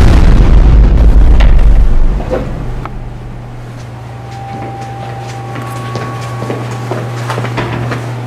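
A deep soundtrack boom that swells in and holds for about two seconds, then settles into a low steady drone with a few faint knocks over it.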